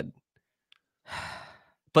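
A single audible breath from a person close to a microphone, about a second in and lasting about half a second, in a pause between stretches of talk.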